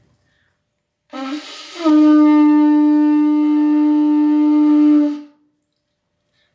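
Conch shell trumpet blown: about a second in it starts low and rises into one long steady note, held for about three seconds before it stops.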